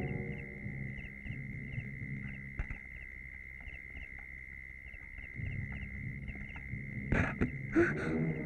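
Suspense film score: a steady high drone with small repeating chirps over a low hum. Near the end it is broken by two short, loud, harsh bursts.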